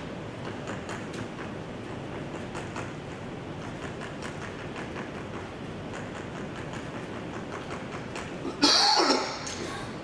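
Chalk tapping on a blackboard as short dashes are drawn: many small, irregular clicks. A man coughs near the end.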